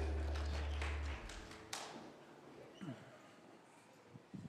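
The band's last low held note rings on and cuts off about a second in. After that the room is quiet but for a few scattered knocks, taps and footsteps.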